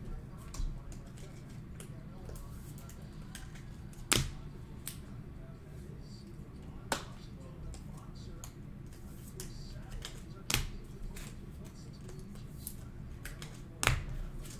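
Trading cards and hard clear plastic card holders being handled on a table: light ticking and rustling with four sharp clicks or taps, the loudest about four seconds in and right at the end, over a low steady hum.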